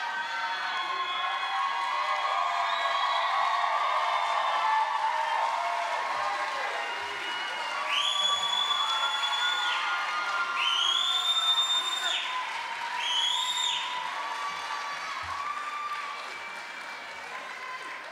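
Audience cheering and calling out over scattered applause, with three long, high-pitched held calls from the crowd about halfway through; the noise dies down toward the end.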